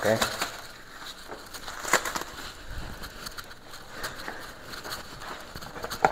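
Disposable gloves being pulled off the hands: scattered small rubbery snaps and rustles, the sharpest about two seconds in, with light handling knocks.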